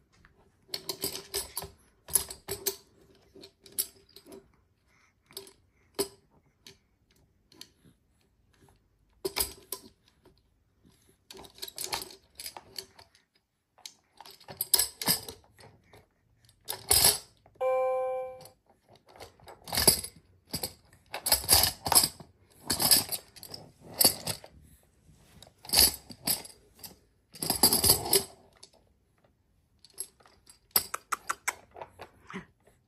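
Toy tambourine's small metal jingles rattling in irregular bursts of shakes and knocks against a plastic tray, with quiet gaps between. About 18 seconds in, a short electronic tone sounds from the activity seat's toy buttons.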